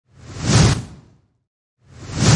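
A whoosh sound effect that swells and fades over about a second, with a second whoosh starting near the end.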